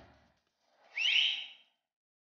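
A person's short whistle, sliding up in pitch and then held briefly before fading, under a second long.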